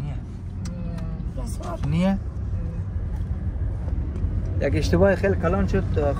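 Steady low rumble of a car in motion heard from inside the cabin: engine and road noise, with voices cutting in briefly about two seconds in and again near the end.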